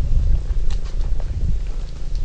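Loud, uneven low rumble on the camera microphone, with a few faint high ticks over it.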